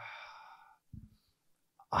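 A man sighing into a close microphone, a breathy exhale that fades out over the first second, then a quick breath in near the end as he gets ready to speak.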